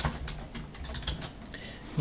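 Computer keyboard being typed on: a light, irregular string of key clicks.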